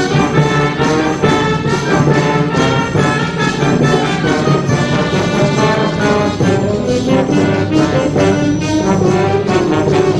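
A brass band playing, with trombones and tuba, in a continuous passage at a steady loudness.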